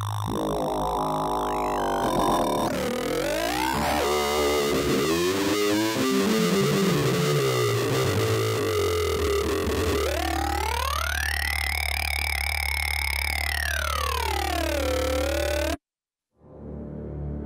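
ROLI Seaboard RISE playing a synthesizer patch: bending, gliding synth notes over a steady low bass drone. A run of stepped falling notes comes around the middle, and a long sweep rises and falls near the end before the sound cuts off abruptly.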